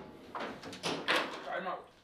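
Foosball ball and rod-mounted figures knocking hard against the table: three sharp knocks in quick succession in the first second or so, followed by a brief voice.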